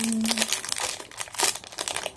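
Foil-lined plastic wrapper of an Oreo strawberry cream cookie pack crinkling in the hands as it is pulled open, in quick irregular rustles.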